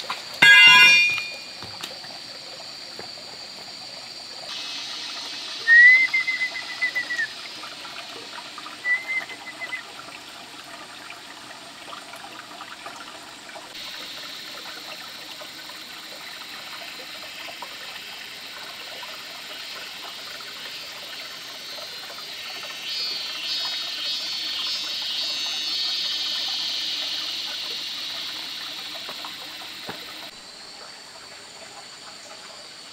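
A shallow stream running over rocks, a steady rush of water, with a few short loud bird chirps in the first ten seconds. A higher hiss swells in about three quarters of the way through and fades near the end.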